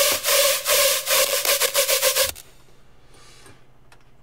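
Distorted hard trap synth patch from Serum played back: a harsh, gritty tone on one steady pitch, chopped into fast rhythmic pulses by an LFO. It cuts off suddenly a little past two seconds in.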